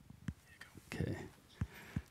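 Faint whispered talk with a few soft clicks and taps.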